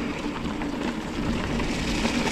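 Mountain bike rolling downhill on a dirt trail covered in dry leaves: steady tyre noise and bike rattle, with wind on the camera.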